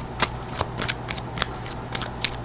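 A tarot deck being shuffled by hand: a quick, irregular run of sharp card snaps.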